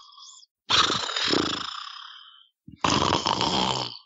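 A man snoring loudly as a comic bit, two snores: the first fades out over about two seconds, and the second rattles and is cut off at the end.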